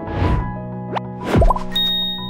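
Animated logo sting: a soft whoosh, a quick rising swoop, then a low pop about two-thirds of the way in, followed by a bright ding near the end over held chords that begin to fade.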